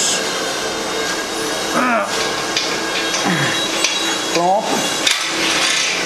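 The crankshaft of an Audi EA888 2.0 TFSI engine being lifted out of the upturned cylinder block: metal scraping and rubbing, with a few sharp knocks.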